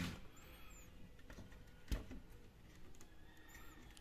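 Faint handling sounds of cables being moved inside an amplifier chassis, with a single soft knock about two seconds in.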